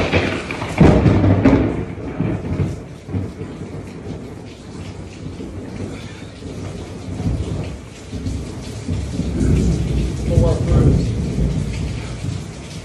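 Heavy rain with rolls of thunder: a long low rumble about a second in and another near the end, over the steady hiss of the downpour.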